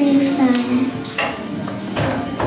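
A group of children singing, holding one long note that ends a little before a second in, followed by a single sharp knock and low hall noise.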